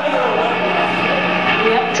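Voices talking in a small club, with no music playing, over a steady low hum from the stage amplifiers.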